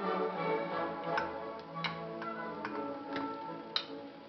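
Background music with several sharp clicks of a metal spoon knocking against a tuna tin as the tuna is scraped out.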